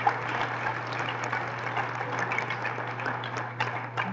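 Audience applauding in a lecture hall: a dense, steady clatter of many hands clapping, over a steady low electrical hum.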